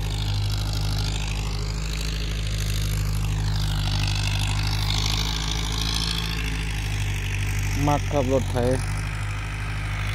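Ford farm tractor engine running with a steady low drone.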